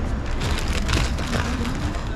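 Busy open-air market ambience: a steady low rumble with scattered clicks and rustles and faint indistinct voices.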